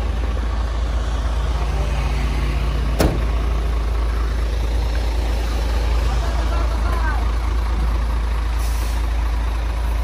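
Hino truck's diesel engine idling close by, a steady low rumble. There is a sharp click about three seconds in and a short hiss of air near the end.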